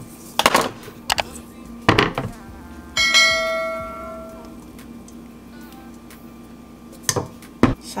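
Kitchenware handling: a few short clicks as the blender jar is lifted and handled, then about three seconds in a sharp knock of the metal mesh sieve against the ceramic bowl that rings like a bell for over a second. Near the end a spoon clinks twice against the sieve.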